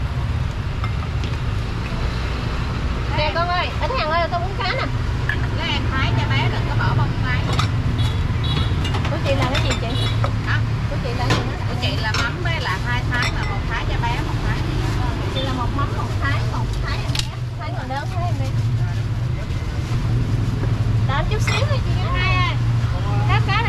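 Busy street ambience: voices chattering on and off over a steady low rumble of motorbike traffic, with a few short clicks.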